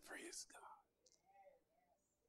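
Only speech, and mostly quiet: a man's amplified preaching phrase trails off in the first half second, then a faint, soft voice.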